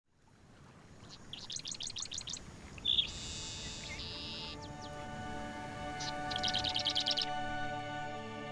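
Songbirds singing: a rapid trill of high notes, then a long high buzz, then another buzzy trill, over a low outdoor hiss. Soft music of held tones fades in from about halfway.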